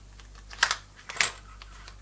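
Short, sharp clacks as a strong cased neodymium magnet is pulled off the Joule thief's coil and set back onto it. There are two main clicks about half a second apart, with a few lighter ticks.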